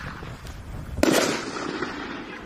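A 1.5-inch consumer aerial firework shell bursting about a second in with one sharp bang, followed by a fading rumble. Before the bang, the hiss of the shell's climb is dying away.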